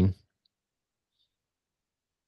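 A man's voice trails off in the first moment, then near silence for the rest.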